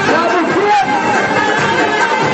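Loud crowd of men shouting and chanting over Arabic wedding music, with many voices overlapping.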